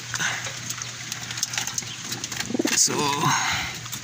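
Racing pigeons cooing in their loft, with scattered small clicks and rustles from the birds and perches.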